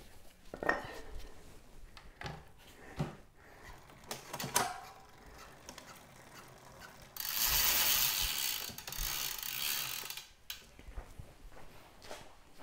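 Bicycle drivetrain being handled and turned while the chain is shifted onto the big chainring: scattered clicks and knocks, then about three seconds of rapid ratcheting from the rear hub's freewheel, the loudest sound.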